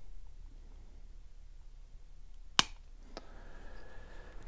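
Flush cutters snapping through a corner mounting tab of a small drone flight-controller circuit board: one sharp snap about two and a half seconds in, then a fainter click.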